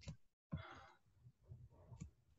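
Near silence, with a faint breathy exhale, like a sigh, about half a second in.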